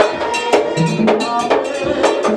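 Haitian Vodou ceremony music: drums and a struck iron bell (ogan) beat a steady rhythm under voices singing a song.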